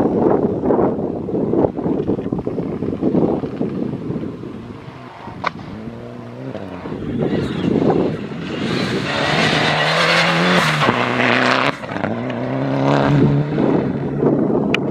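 Mitsubishi Lancer Evolution rally car at full throttle on a gravel special stage, its revs rising and dropping back with each gear change as it passes. It is loudest about nine to eleven seconds in, with the rush of tyres throwing loose gravel and dust.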